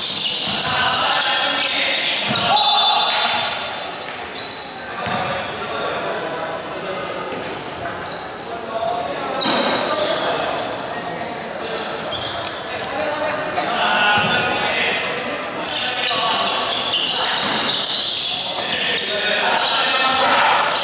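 Basketball game sounds in an echoing gym: a basketball bouncing on the court, sneakers squeaking, and players' voices calling out. The activity gets louder again in the last few seconds.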